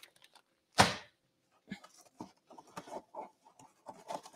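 Stencils being rummaged through and handled: one sharp clack just under a second in, then scattered light rustles and taps.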